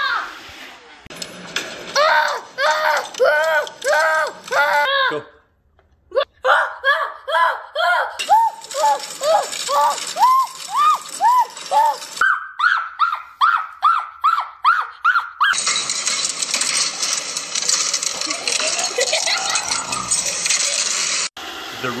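A child crying out over and over in short rising-and-falling cries, two or three a second, getting higher and shriller over about fifteen seconds. Then a steady robot-vacuum motor whir for about six seconds, which cuts off suddenly near the end.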